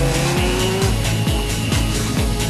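Electronic dance music with a steady beat, over which a BMW 3 Series' tyres squeal briefly in the first second.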